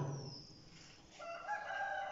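A faint, long, steady pitched call from an animal, starting about a second in after a near-silent moment.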